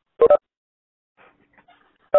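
Telephone keypad tone beeps: one short double beep of steady pitched tones just after the start. A faint, indistinct sound follows late on.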